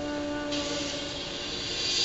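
Sound from a science-fiction TV episode's soundtrack, with no dialogue: held, steady musical tones fade out while a hiss comes in about half a second in and carries on.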